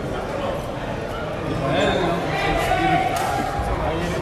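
Crowd chatter: several people talking at once in a large, echoing room, with no single voice standing out.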